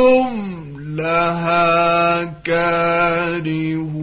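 A solo male reciter chants the Quran in the melodic mujawwad style, drawing out one long held line. The pitch glides down at the start, the line breaks off briefly twice (about halfway and again near the end), and it wavers in ornament toward the close.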